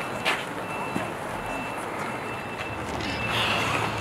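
A high electronic beep repeating about once a second over outdoor background noise, with a sharp click about a third of a second in.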